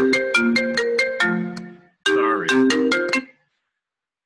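A marimba-style ringtone melody of quick struck notes plays through one phrase, breaks off briefly about two seconds in, starts again and cuts off suddenly a little over three seconds in.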